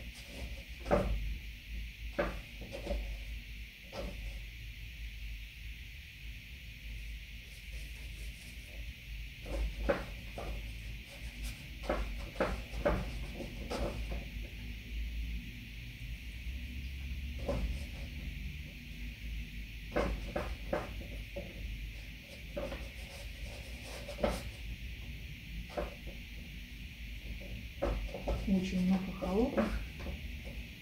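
Oil-painting brushwork: scattered light clicks and taps, at uneven intervals, from a brush working paint on the palette and canvas, over a steady hiss.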